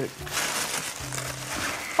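Clear plastic wrapping crinkling and rustling as hands pull and tear at it to free a boxed model.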